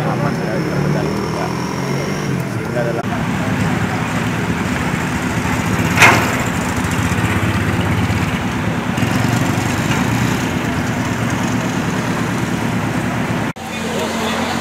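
Street noise of running motor vehicle engines with a low steady rumble, under indistinct background voices. A single sharp knock about six seconds in.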